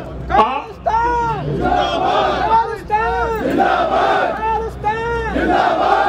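Crowd of rally-goers shouting slogans together: short, loud shouts of many voices, each rising and falling in pitch, about two a second.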